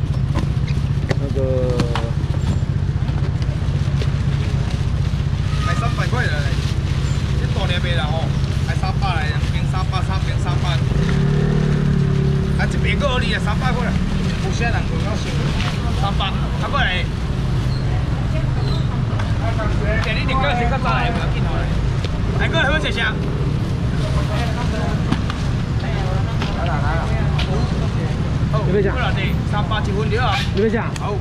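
Street-market background: a steady low engine rumble under scattered talking voices from the crowd.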